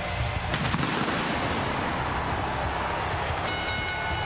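Stage pyrotechnics firing over wrestling entrance music: a dense rushing hiss with a few sharp bangs about half a second in.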